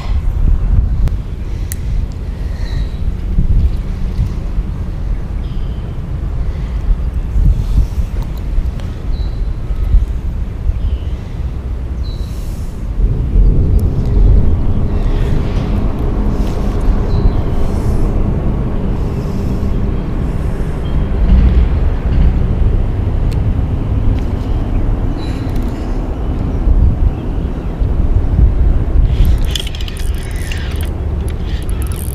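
Wind buffeting the microphone: a loud low rumble that rises and falls, growing fuller about halfway through.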